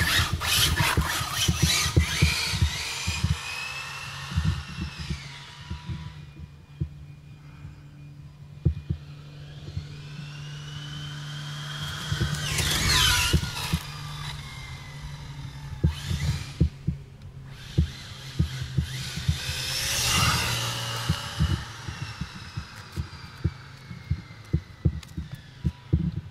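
Brushless electric motor of an ARRMA Infraction RC car whining up and down in pitch as it accelerates, slows and passes, in three bursts: at the start, about halfway and about two-thirds of the way through. Many short thumps and knocks run throughout, and a steady low hum sits under the first half.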